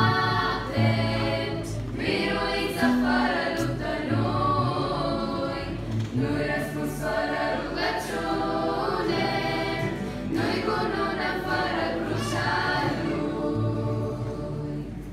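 A girls' vocal group singing a religious song together, in sung phrases with long held notes.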